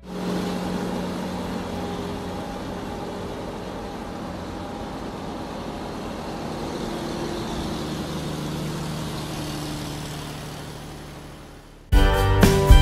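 A motor vehicle engine running steadily as the truck drives, with a slight change in pitch partway through, fading out near the end.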